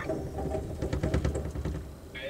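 Low rumble of a moving passenger train car, with a quick run of clicks and clatter from about half a second in as its wheels roll over the switches and crossing rails of an interlocking.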